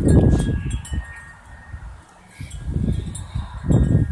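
Wind buffeting a handheld phone's microphone in gusts, loudest in the first half second and again over the last second and a half, with faint high ringing tones behind it.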